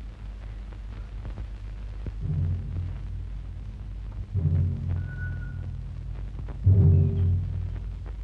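Dramatic film background music: three heavy, low drum-like strikes about two seconds apart, each ringing on for around a second. The last strike is the loudest.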